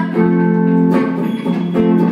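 Live acoustic guitar playing with a woman singing into a microphone, held notes that change every second or so.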